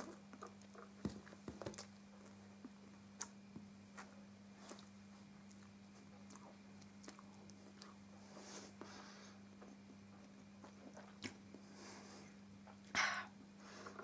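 Faint chewing and small wet mouth clicks as a mouthful of noodles is eaten, over a steady low hum, with a brief louder puff of noise near the end.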